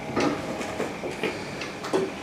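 A few soft, irregularly spaced clicks and taps, about six in two seconds, over faint room noise.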